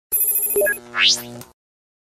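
Short electronic TV-station ident jingle for an animated logo: bright ringing tones with a few quick blips, then a fast rising sweep about a second in, over held low notes, cutting off after about a second and a half.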